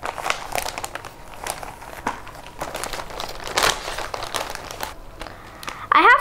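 Ice cubes tipped from a steel plate into a large plastic zipper bag: the bag crinkles, with irregular clicks and rattles of ice, loudest about three and a half seconds in.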